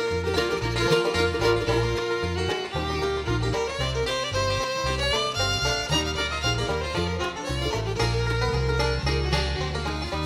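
Instrumental break in a bluegrass song: banjo and fiddle playing over guitar and bass.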